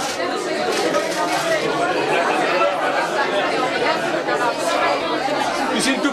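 Indistinct chatter of several people talking over one another.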